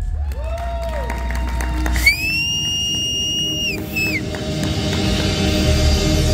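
Live band music from a stage show, broken about two seconds in by a loud, shrill, steady whistle lasting well over a second, then a short second whistle. After that the band's music comes back in fuller, with heavy bass.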